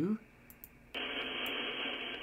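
Shortwave receiver audio from an SDRplay RSP1 in HDSDR tuned to the 20-metre band: a steady hiss of band noise that cuts in suddenly about a second in, its treble sharply cut off by the receiver's bandpass filter. A few faint clicks come just before and during it.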